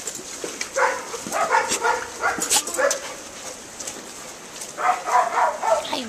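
Dogs barking and yipping: several short groups of barks.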